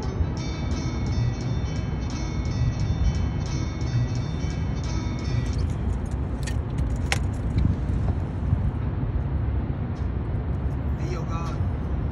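Rap music with a steady beat plays for about the first five seconds and then stops, over a steady low rumble. A few sharp clicks follow.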